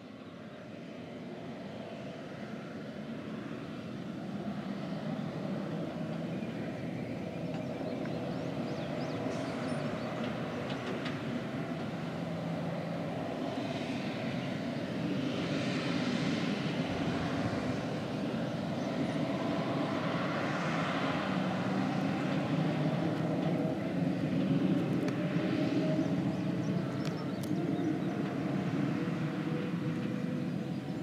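John Deere R4045 self-propelled sprayer's diesel engine running steadily as the machine drives across the field at speed, growing louder as it comes closer. A rushing hiss in the upper range swells several times over the engine.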